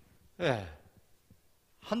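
A man's short sigh-like vocal sound, falling steadily in pitch, about half a second in, followed by a quiet pause before speech resumes near the end.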